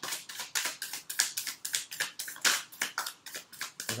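A deck of Animal Spirit oracle cards being shuffled by hand, the cards slapping and clicking together in a quick steady run of about five or six strokes a second.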